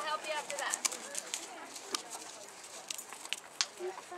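Horse's hooves on a sand arena as it passes and moves off, an uneven series of clicks, with a person's voice in the first second.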